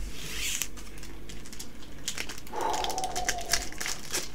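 Foil booster-pack wrapper crinkling and being torn open by hand, a run of small crackles. A faint short whine, sliding slightly down, is heard about two and a half seconds in.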